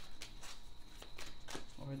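Tarot deck being shuffled by hand: a run of irregular, sharp little clicks as the cards slip and snap against each other.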